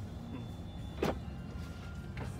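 Steady low rumble of a car heard from inside the cabin, with one short click about a second in.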